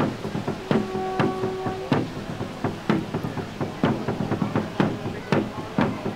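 A series of sharp knocks, about two a second and not quite regular. One brief held tone sounds about a second in.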